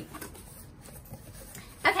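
Faint rustling of a cardboard shipping box as its flaps are pulled open.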